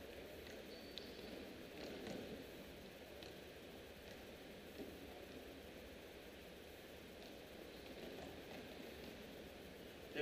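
Faint, steady ambience of a large sports arena with a few soft, distant knocks and one brief squeak about a second in, from volleyball players drilling on the court.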